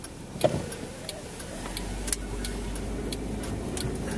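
Car's turn-signal indicator ticking evenly, a little under two ticks a second, inside the cabin. There is a short knock about half a second in, then from about a second and a half the low rumble of the engine and tyres comes up as the car pulls away from a stop.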